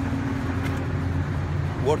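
Steady low mechanical hum with a constant tone from rooftop ventilation and air-conditioning machinery.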